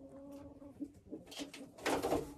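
A hen's low, steady crooning, followed near the end by a quick flurry of wing flaps as she flutters up.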